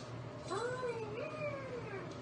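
Kitten giving one long meow about half a second in, rising in pitch, wavering, then falling away.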